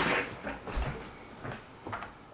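Pen nib scratching on paper in a run of short, quick strokes, the first the loudest, with a soft low bump a little before the middle.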